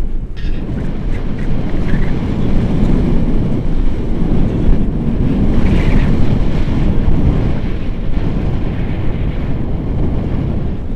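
Rushing airflow of a paraglider in flight buffeting an open camera microphone: loud, low, gusty wind noise that rises and falls.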